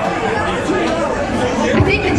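Audience chatter between songs in a club: many voices talking at once, with no music playing.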